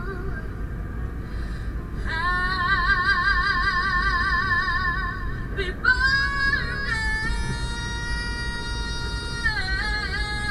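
A high singing voice holding long, drawn-out notes with a wide vibrato, over the steady low rumble of road noise inside a moving car. The singing comes in about two seconds in, breaks briefly around the middle, then carries on with higher, steadier held notes that fall away near the end.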